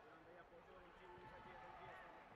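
Faint, indistinct voices of people talking and calling out in a large sports hall, over low crowd hubbub.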